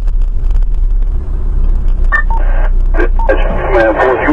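Low steady rumble of a moving vehicle heard from inside, with scattered clicks. About two seconds in a two-way radio gives short beeps, and from about three seconds in a voice comes over the radio.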